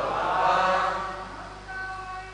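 Chanting of a Sanskrit verse, the sung line dying away about a second and a half in, with a few quieter held tones after it.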